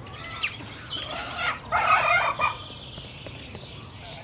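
Aviary fowl calling: one sharp rising call about half a second in, then a burst of harsh, rapid calls around two seconds in that stops well before the end.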